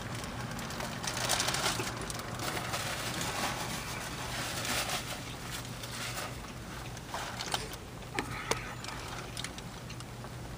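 Close-up chewing of a mouthful of burger, with irregular rustling of its paper wrapper and a few short clicks late on, over a low steady hum.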